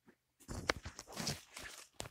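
Irregular crunching and rustling of footsteps among corn stalks, with leaves brushing, starting about half a second in.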